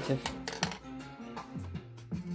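Background music with a steady tone, over a few light clicks and scratches of a box cutter slitting the plastic shrink-wrap on a small tin.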